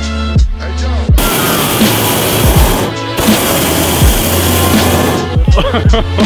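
Background electronic music with a hip-hop beat and deep falling kick drums. From about a second in, a hot air balloon's propane burner fires: a loud steady roar that breaks off briefly midway and stops about a second before the end.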